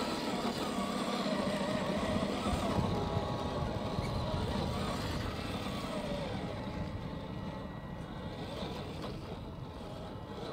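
Electric motor and gear drive of a 1/10 scale FMS Toyota FJ40 RC crawler whining, the pitch wavering up and down with the throttle, over the crunch of its tires on dirt and loose rock. It grows quieter after about six seconds.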